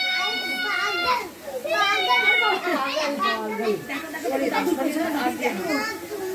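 Children's voices calling and chattering: a long high held call at the start, then quick excited back-and-forth calls.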